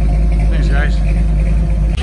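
1978 Ford Bronco's 400 cubic-inch V8, fitted with a mild cam, idling steadily through its dual Flowmaster exhaust, heard from behind the truck.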